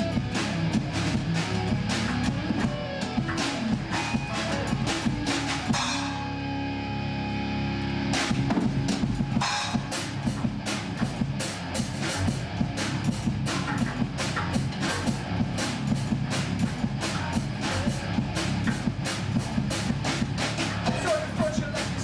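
A metal band playing an instrumental passage live in a room: distorted electric guitars and bass over a drum kit playing a steady beat. About six seconds in the drums stop for around two seconds while a guitar chord rings out, then the drums come back in.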